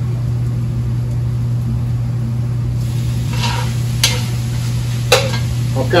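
Cooked ground beef being scraped from a skillet into a Dutch oven: faint sizzling over a steady low hum, a soft scrape about three seconds in, and two sharp taps of a utensil against the pan near the end.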